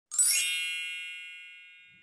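A bright chime sound effect. It opens with a quick rising shimmer, then a cluster of high ringing tones fades away slowly over about two seconds.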